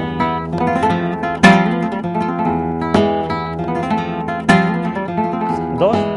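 Flamenco guitar played solo: picked notes ring under strummed chords that hit about every second and a half.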